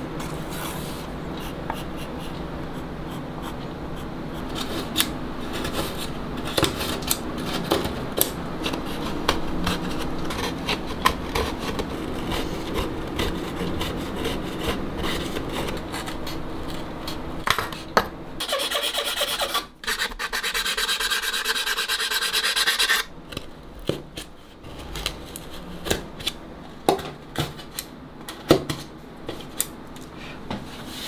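Hand tools scraping and filing a violin's wooden top, with small ticks and knocks of the tool against the wood. A brighter, brisker spell of scraping lasts a few seconds just past the middle.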